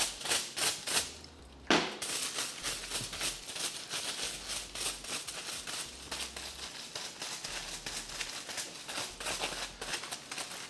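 Tint brush stroking lightener onto a strand of hair laid on aluminium foil: short scratchy strokes on the foil, several a second, coming faster after about two seconds.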